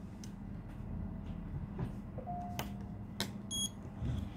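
A few light clicks of a phone battery's flex connector and the tester being handled, over a steady low hum, then a short high electronic beep near the end from the iCopy Plus battery tester as it detects the connected battery.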